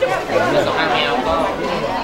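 Several people talking at once in a crowd: overlapping voices of general chatter, with no other distinct sound standing out.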